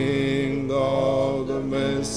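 A man singing a slow gospel worship song, holding long sustained notes with one change of note about a second in.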